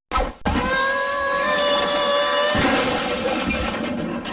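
Cartoon glass-shattering sound effect: a short crash, then a long, loud breaking sound with a steady held tone running through it. A hiss swells in a little past halfway.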